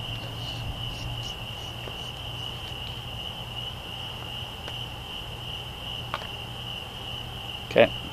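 Crickets trilling in one continuous high-pitched note, with a low steady hum underneath.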